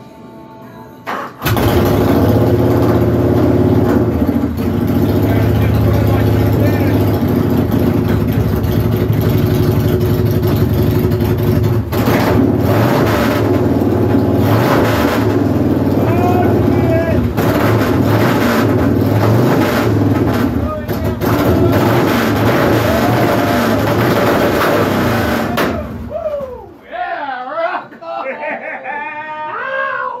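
Motorcycle engine on a workshop lift cranked and catching about a second and a half in, on a second start attempt. It runs loud, its speed rising and falling a few times, then shuts off about 26 seconds in.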